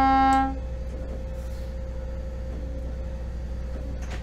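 Boat's horn giving one short blast that cuts off about half a second in, over the steady low hum of the trawler's engines.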